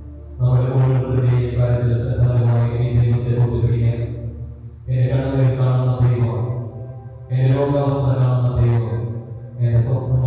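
A man chanting a prayer in three long, sustained phrases, with brief breaks for breath between them.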